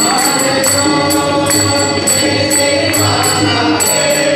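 Live Indian classical vocal music: a voice holding long notes that glide up and down over a steady held accompaniment, with light percussion strokes.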